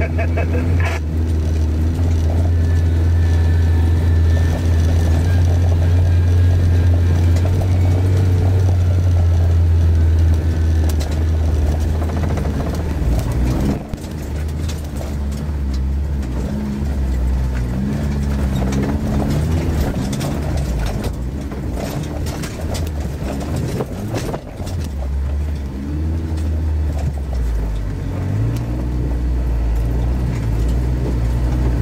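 Off-road 4x4's engine heard from inside the cab while driving a snowy, rough lane: a steady low drone for the first dozen seconds, then the engine note rising and falling, with knocks and rattles from the vehicle going over bumpy ground.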